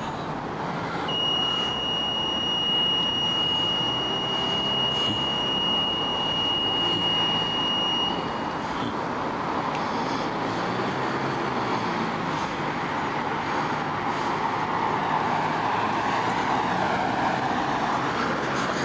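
Street traffic noise from passing cars, swelling near the end as a car drives close by. A steady high-pitched tone also sounds, starting about a second in and lasting about seven seconds.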